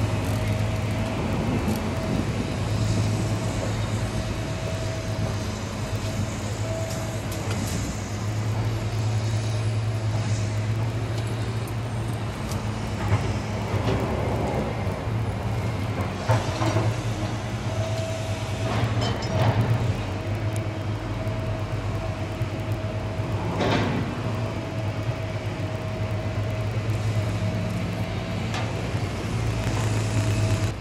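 Steady low engine drone with a constant thin whine running through it, and a few brief knocks and clatters from handling.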